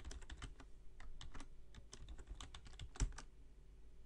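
Computer keyboard typing: a quick, irregular run of keystrokes entering a login name and password, with one louder keystroke about three seconds in.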